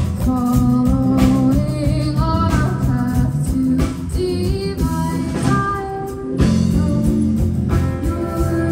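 Live amplified band: a woman singing the lead melody over electric guitar and bass, carried through street PA speakers.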